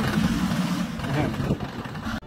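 The engine of a home-built, jeep-style off-road vehicle running steadily, with people's voices in the background.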